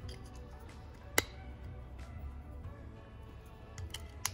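Faint background music, with one sharp click about a second in from the plastic cap being pried on a fuel injector.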